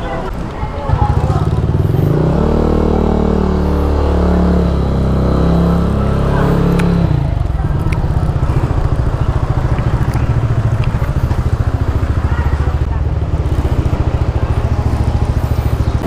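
Motorcycle engine running close by as the bike rides slowly. It comes in loudly about a second in, its pitch shifting for several seconds, then settles into a steady pulsing rumble.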